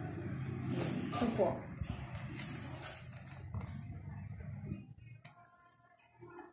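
Cardboard product box and plastic packaging being handled and opened, rustling with a few short scrapes, growing quieter near the end.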